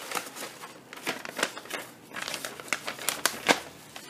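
Paper and a kraft padded mailer crinkling and rustling as a folded sheet is pulled out of the envelope and opened, with irregular crackles throughout.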